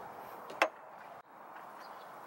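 A single short click a little over half a second in, from the small metal resistor mounting plate being handled in its bracket; otherwise only faint hiss.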